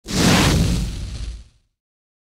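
Title-card sound effect: a sudden whoosh with a heavy low rumble under it, starting at once and fading out after about a second and a half.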